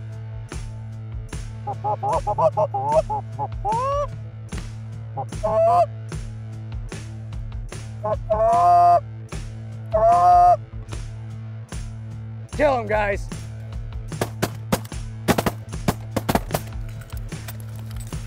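Canada geese honking repeatedly, the calls rising and breaking in pitch, over background music with a steady beat. Near the end comes a quick volley of sharp cracks, shotgun fire.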